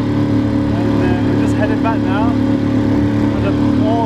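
Small outboard motor running at a steady pace as it drives a boat across choppy water, a constant drone with the noise of wind and wash over it. A voice comes in briefly over the engine about a second in.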